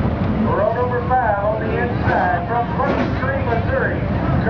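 People talking over a steady low rumble of dirt late-model race cars running around the track.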